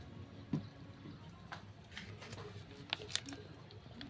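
Faint, scattered soft pops and clicks from thick chili spice paste cooking in a wok, with one soft knock about half a second in.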